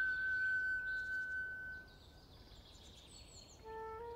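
A long held flute note fades out about halfway through, leaving a quiet gap with faint bird chirps. The music comes back in just before the end.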